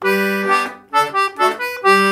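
D/G melodeon (two-row button accordion) playing the opening of a folk dance tune: a run of separate melody notes over low bass and chord notes.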